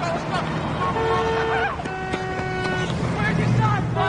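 Car horns honking in busy street traffic: one long horn blast about a second in, then a second, lower-pitched horn held for about a second, over a constant traffic rumble that grows louder near the end.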